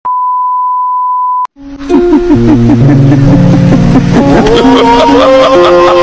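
A steady single-pitch beep, the test tone of a TV-static glitch transition, holds for about a second and a half and cuts off with a click. Music with held notes then comes in and runs on loudly.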